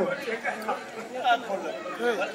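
Crowd chatter: many voices talking at once, overlapping and indistinct, in a pause between a man's loud calls.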